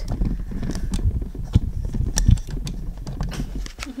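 Handling noise from a camera being fiddled with at close range: a low rumble with irregular taps, clicks and knocks. It stops abruptly at the end.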